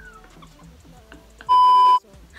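A loud, steady electronic bleep of one pitch, about half a second long, starting abruptly near the end and cutting off suddenly: the edited-in tone used to censor a word.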